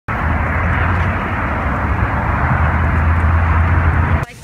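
Steady, loud outdoor rumble and hiss with a low hum beneath it.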